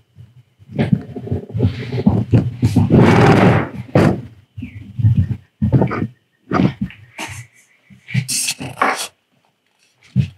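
Handling noise at a hobby workbench: irregular thumps and rubbing as the camera is moved and bumped about, with short scratchy sounds near the end.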